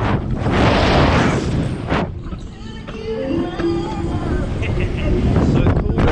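Wind buffeting the microphone of a camera mounted on a Slingshot ride capsule as it swings through the air, with a loud rush about a second in and a heavy low rumble throughout.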